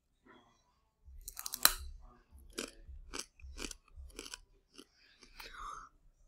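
A thin, crisp tortilla chip (the One Chip Challenge Carolina Reaper chip) bitten and chewed close to the microphone. The loudest crunch comes about a second and a half in, followed by steady crunching chews about two a second.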